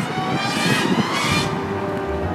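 A car driving: steady engine and road noise, with a low rumble growing about halfway through.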